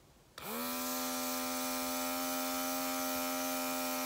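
Handheld cordless MineralAir airbrush makeup device switching on about half a second in: its small motor spins up quickly, then hums at a steady pitch while spraying foundation.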